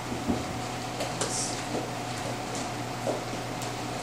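Footsteps going down a staircase: a few faint, irregular soft thuds over a steady low room hum.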